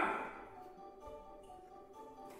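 Quiet instrumental underscore from a stage musical's band, a few soft held notes, after the tail of a loud voice dies away with hall echo in the first half second.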